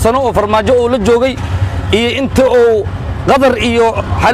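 A man talking continuously, with a steady low engine rumble underneath, as from a small running vehicle.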